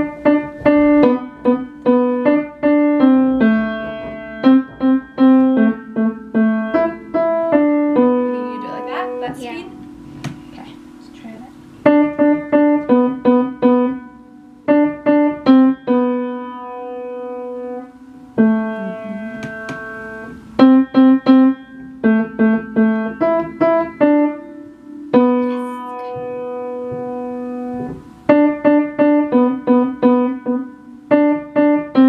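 An upright piano played by a student: a simple beginner's piece of single notes and small chords in short phrases, with some notes held and brief pauses between phrases.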